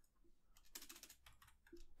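Faint computer keyboard keystrokes, a quick run of key presses starting about half a second in, as new lines are opened in the code.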